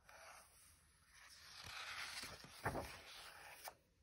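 A paperback picture book's page being turned by hand: a faint rustle and slide of paper lasting a couple of seconds, with a couple of soft bumps as the page is handled and laid flat.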